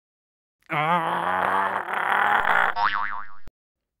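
A man straining and grunting with effort for about two seconds, the pitch wavering, followed by a cartoon boing sound effect with a wobbling pitch that cuts off sharply.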